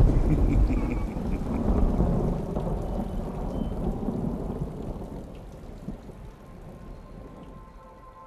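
A rumble of thunder, loudest at the start and fading away over several seconds, over the hiss of rain.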